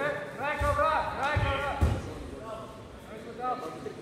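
Loud shouting voices, pitch rising and falling, over three dull thumps in the first two seconds, the sound of judoka stepping and landing on the tatami mats during a grappling exchange; a shorter call follows near the end.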